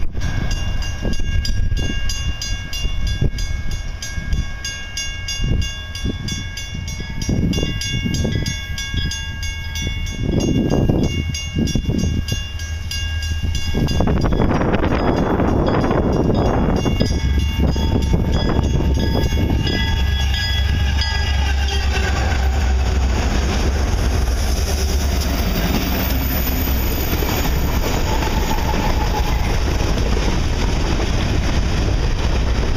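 A train horn sounding steadily in several tones for about twenty seconds over regular clicks, its pitch dropping as it ends. Then a freight train led by EMD SD40-2 diesel locomotives passes close: a deep diesel rumble with wheel and rail noise from the rolling hopper cars.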